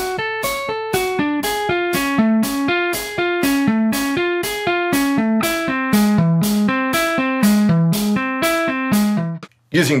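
Electric guitar playing a single-note fretting-hand drill in hammer-ons only, with the idle strings muted by the picking hand reaching over the neck. Even notes come about three a second, stepping through an angular pattern across the strings, and the pitch works lower in the second half. The notes stop just before the end.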